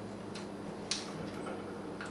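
Plastic soda bottles being handled and set down: two faint light clicks, the second louder about a second in, over a steady low hum.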